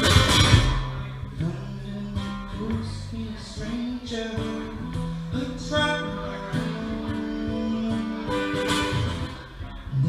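Acoustic guitar played live: a loud strum at the start, then from about a second in a quieter passage of ringing notes.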